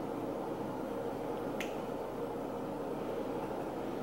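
Steady low room hiss with one short, sharp click about one and a half seconds in.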